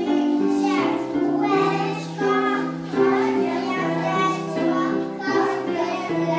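A group of young children singing a song together over an instrumental accompaniment of steady held notes.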